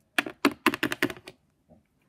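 A quick run of light plastic clicks and taps, about a dozen in a second, as small plastic toy figures are handled and tapped against a hard floor and a plastic toy house; it stops about halfway through.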